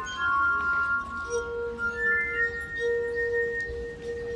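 Glass harp: wine glasses partly filled with liquid, their rims rubbed with fingertips, playing a slow melody of long, steady, overlapping ringing tones. About a second in a lower note enters and is held to the end beneath a higher one.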